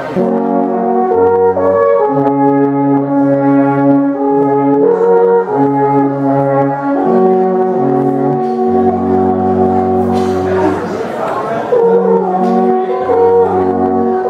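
Three wooden alphorns playing together in harmony: held notes moving in steps, with a low part dropping in and out.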